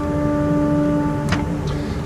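Pipe organ Great open diapason note, sounded through the great-to-pedal coupler by pressing a pedal key down hard, holding one steady pitch. It speaks only under heavy pressure because the coupler's tracker adjusting screws are out of adjustment. About a second and a quarter in there is a click and the upper part of the tone drops away, leaving the low tone sounding.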